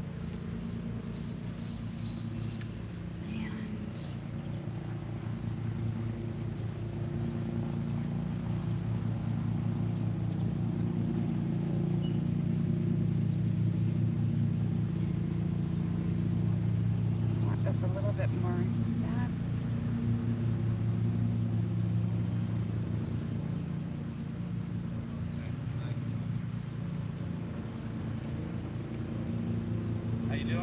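Lawn mower engine running steadily, growing louder through the middle and easing off near the end.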